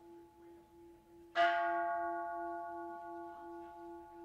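Kansho temple bell struck once, about a second and a half in. Its ring dies away slowly over the lingering, wavering hum of the previous strike. The kansho is rung to call people to the start of a Buddhist service.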